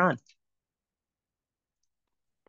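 The last word of a talk, ending about a fifth of a second in, then dead silence on the call audio.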